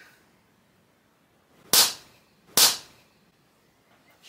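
Two sharp open-hand slaps on the back of a person's bare neck, a little under a second apart.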